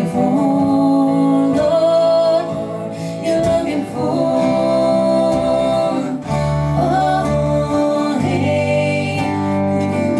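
An acoustic string band playing live: acoustic guitar with a dobro played lap-style with a slide, long held notes with several gliding slides between pitches about six to seven seconds in.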